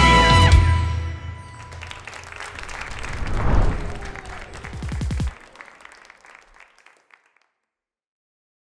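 A live big band with brass and drums ends on a final held chord in the first second, followed by applause from the audience, which cuts off abruptly about five seconds in.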